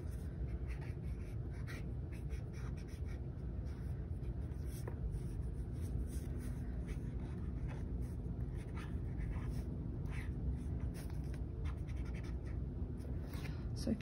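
Brush-tip marker stroking lightly over sketchbook paper, in faint, irregular strokes, with a steady low hum behind them.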